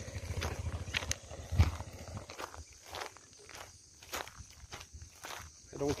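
Footsteps on loose river pebbles and gravel, a step about every half second, with a deep rumble under the first two seconds.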